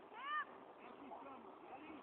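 A child's short, high-pitched squeal that rises and falls in pitch, a fraction of a second in, followed by faint, distant children's voices.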